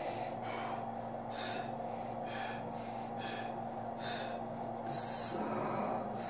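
A man breathing hard in short, forceful bursts, about one to two a second, while straining against a leg press at the point of muscular failure. Under the breaths runs the steady hum of the motorised ARX leg press, which stops a little after five seconds in.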